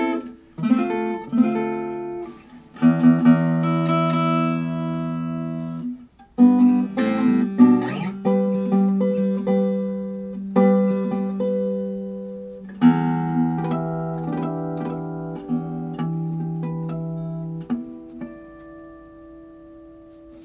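Enya Nova Go carbon-fiber acoustic guitar being played: plucked chords and single notes in several phrases, each left to ring on for a few seconds with a strong bass, briefly stopping twice and fading softer near the end.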